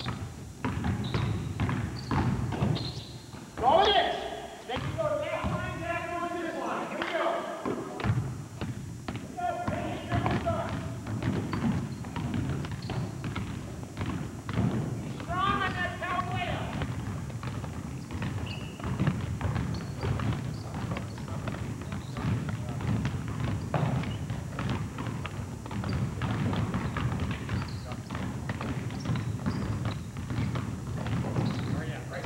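Basketballs dribbled on a hardwood gym floor: a continuous run of bounces. Raised voices call out about four seconds in and again around the middle.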